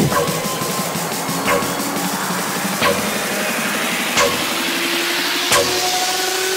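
Drum and bass DJ mix in a sparse passage: held synth notes with a sharp hit about every second and a half, and a hissing rise building near the end.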